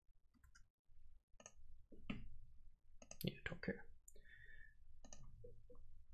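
Faint clicks of computer keyboard keys, a scattered run of keystrokes that bunches up about three seconds in.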